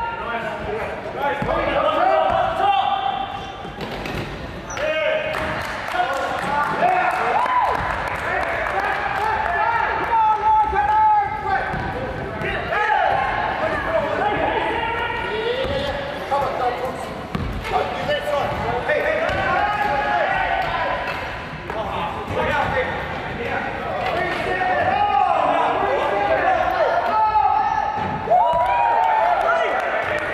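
A basketball bouncing on a hardwood gym floor during wheelchair basketball play, with players' voices calling out in the echo of a large sports hall.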